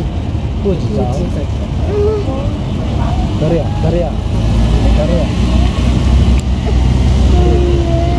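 Motorcade of police escort motorcycles and cars driving past, a steady engine and tyre rumble that grows louder in the second half.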